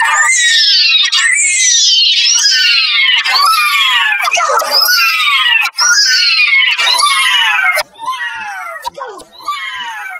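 A character's voice clip saying "no", heavily pitch-shifted and effects-processed into a high, screechy cry. The cry slides down in pitch and repeats about once a second, dropping quieter and more broken near the end.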